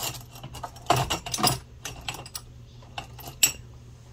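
Small metal objects clinking and rattling as they are handled, in short clatters: one at the start, a busier run about a second in, and a few more near three seconds.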